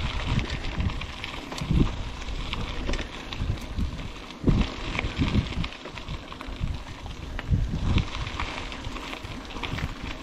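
Mountain bike riding a dirt singletrack: tyres crackling over the dirt and gravel with scattered small rattles and clicks from the bike, under irregular low gusts of wind buffeting the microphone.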